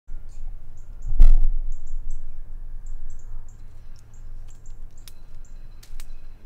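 Outdoor ambience: a steady low wind rumble on the microphone and a run of short, high, irregularly spaced chirps. About a second in there is one loud, sudden rustling thump.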